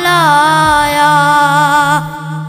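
A cappella naat singing: one voice holds a long wordless note that glides down in the first half second and then stays level, over a low drone that pulses about three times a second.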